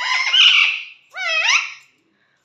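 Indian ringneck parakeets calling: a harsh, chattering call, then about a second in a shorter call that rises in pitch.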